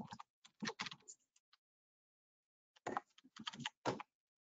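Computer keyboard typing in two quick runs of keystrokes: one in the first second and a half, then a pause, then another run near the end.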